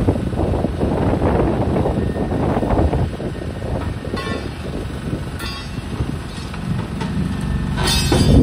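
Demolition excavator working its hydraulic crusher jaws into a concrete structure: a continuous, irregular crunching and rumbling of breaking concrete and falling rubble over the machine's engine. Short metallic screeches come about halfway through, and a louder crash of debris comes at the very end.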